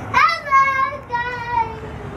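A toddler's high-pitched sing-song voice: a quick rising squeal, then two long held notes, the second a little lower and falling away.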